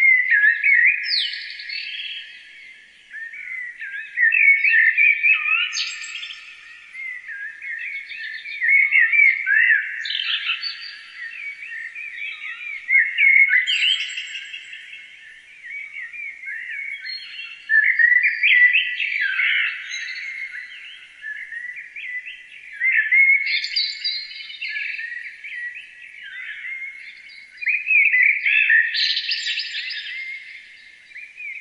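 Songbirds singing, a dense stream of chirps and trills that swells into louder phrases about every four to five seconds.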